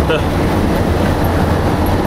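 Steady low rumble and road noise of a bus on the move, heard from inside its onboard toilet cubicle.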